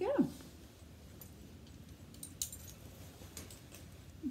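A few faint, scattered metallic clicks and clinks from the snaps and rings of a miniature horse's leather driving harness as the driving lines and bit are handled.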